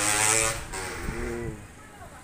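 A motorcycle passes close by with its engine running. Its note is loud at first and fades away about half a second in.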